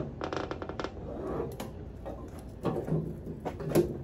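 Folding aluminium RV entry steps being lifted and swung up into the doorway to stow for travel, with a quick run of metallic clicks and rattles at first, then scattered clicks and a few knocks near the end as they settle into place.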